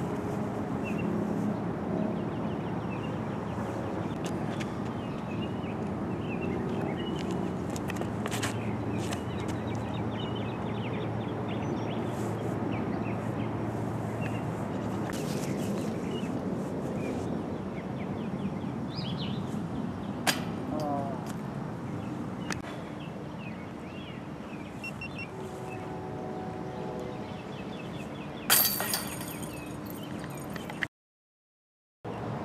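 Steady outdoor background noise with a single sharp knock about two-thirds of the way through. Near the end comes the loudest sound: a putted disc crashing into the chains of a metal disc golf basket, a brief metallic rattle.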